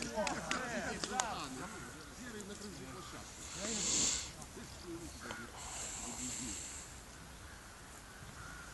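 Faint, indistinct talking from several people, with a few sharp clicks in the first second and two short bursts of hiss in the middle.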